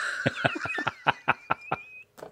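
Breathless, wheezing laughter: a quick, even run of short puffs, about seven a second, with a thin high squeal running through it.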